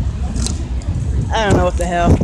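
Steady low rumble of an outdoor street scene, with a person's voice heard briefly near the end.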